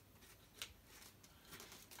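Faint scraping of a blade slitting the packing tape on a cardboard box, with one short click about half a second in.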